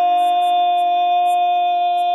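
A long shofar blast held steadily on one note, with a lower steady tone beneath it. The note breaks off abruptly just after the end.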